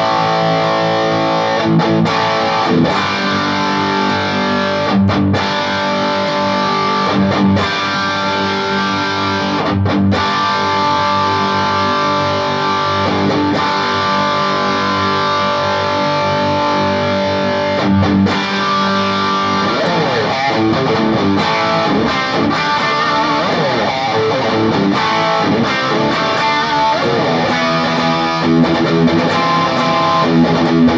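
Electric guitar played through a Wampler Tumnus Deluxe boost/overdrive pedal with the gain turned up, giving a full overdrive. Sustained chords ring out with a few brief gaps, then from about twenty seconds in a faster riff of moving notes.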